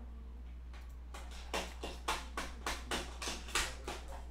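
Computer keyboard keys tapped in a quick run of about ten strokes, roughly three a second, starting about a second in, over a steady low hum.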